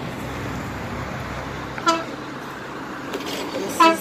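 Road traffic on a bridge: a passing car's engine hums steadily, and short car-horn toots sound about two seconds in and again near the end.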